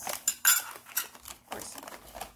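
Small porcelain R.S. Prussia dishes clinking against each other as they are handled and set down: a few sharp clinks, the loudest about half a second in.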